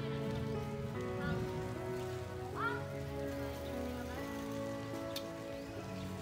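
Background music of slow, sustained chords that change every second or so, with a few short chirps over it.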